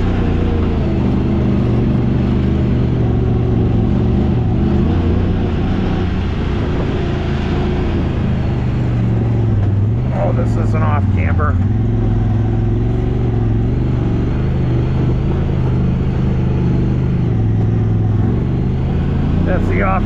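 Honda Talon X side-by-side's parallel-twin engine running at low revs as the machine crawls along a rough dirt trail, heard from inside the cab. It is a steady drone whose pitch rises and falls a little with the throttle.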